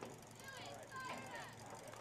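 Faint, distant voices calling out across an open football field, unintelligible, over a low steady background haze.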